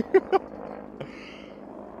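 A man's brief laugh in three short bursts right at the start, followed by a faint knock about a second in over a quiet outdoor background.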